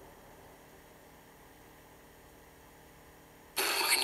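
A gap between DVD trailers: a faint steady hum for about three and a half seconds. Near the end the next trailer's soundtrack cuts in suddenly with a loud, noisy sound.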